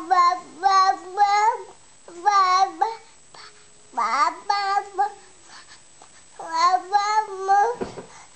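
A baby babbling a sing-song string of "ba-ba" syllables in a high voice, in four short bursts with pauses between.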